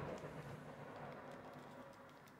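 Quiet background: a faint low rumble that fades away, with a few faint light clicks from a small cardboard box and a furry microphone windscreen being handled.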